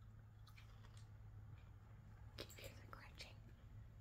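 Faint close-up chewing of a toasted cricket: a few small crunches and mouth clicks, mostly in the second half, over a low steady hum.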